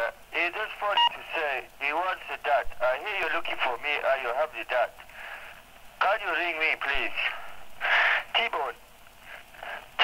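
Speech heard over a telephone line, thin and narrow-sounding like a recorded answerphone message, with short pauses between phrases.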